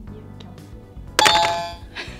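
A bright bell-like chime, an added sound effect, strikes once about a second in and rings out over most of a second, over quiet background music.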